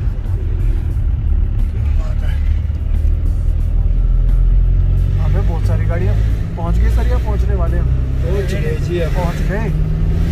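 Steady engine and road rumble heard from inside a moving vehicle's cabin. From about five seconds in, a singing voice with music comes in over it.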